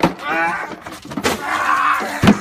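A man's drawn-out yell, with a knock at the start and another about a second in.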